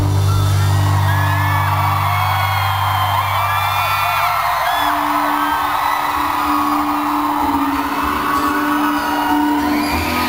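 Live rock band music from a concert, with the audience whooping and cheering over it. A deep held note gives way to a higher held note about halfway through.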